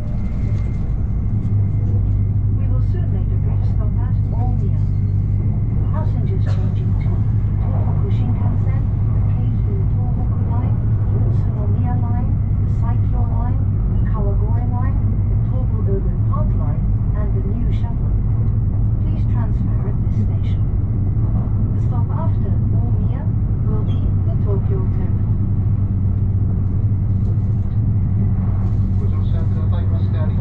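Interior running noise of an E7 series Shinkansen: a steady low rumble from the running gear and the rush of air, heard inside the passenger cabin. Low voices come and go through much of it.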